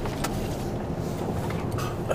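Tipper lorry's diesel engine running, heard from inside the cab as the lorry pulls slowly forward, with a couple of faint clicks.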